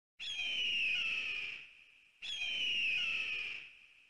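A bird-of-prey screech, an eagle-cry sound effect, played twice. Each cry lasts about a second and a half and falls slightly in pitch before fading.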